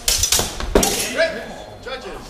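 Steel training longswords clashing several times in quick succession during a fencing exchange, with a voice calling out in the second half.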